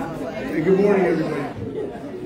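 Indistinct chatter of several people talking in a large room, with one voice louder about half a second in.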